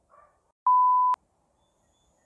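Censor bleep: a single steady, high, pure beep about half a second long that starts and stops abruptly, edited into the soundtrack over a word.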